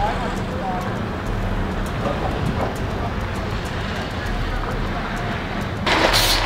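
A steady low vehicle rumble with faint, indistinct voices over it. Near the end a sudden loud rush of noise breaks in.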